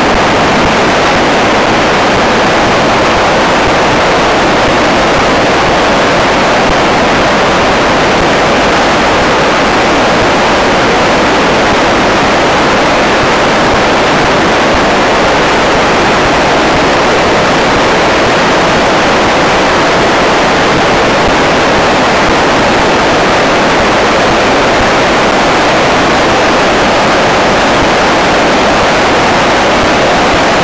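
A river in flood, rushing loudly and steadily without a break.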